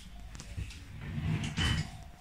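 A drawer of a wooden chest of drawers being pulled open on its runners: a low sliding rumble that gets louder near the end.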